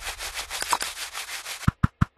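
Sound-design effect for the outro logo: a rapid, scratchy rattling texture, then a few sharp percussive hits in quick succession near the end that cut off abruptly.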